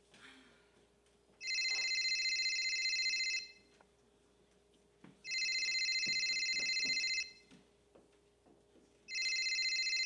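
Telephone ringing with a trilling ring tone: three rings of about two seconds each, with pauses of about two seconds between them.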